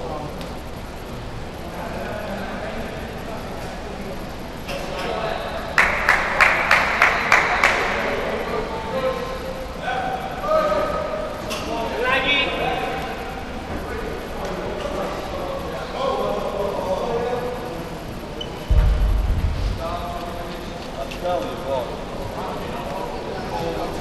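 Indistinct chatter of men's voices in a gym. About six seconds in there is a quick run of roughly eight sharp clicks, and near the end a single low thud.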